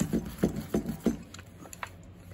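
Foam sponge dabbing acrylic paint through a plastic stencil onto paper: a quick series of soft taps, about three a second, thinning out in the second half.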